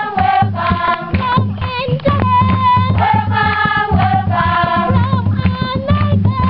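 A choir, a group of voices singing a melody together, with a low, rhythmic part running beneath.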